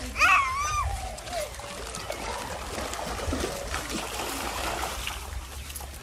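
Shallow pool water sloshing and splashing as people wade through it, a steady watery wash, with a brief voice call just after the start.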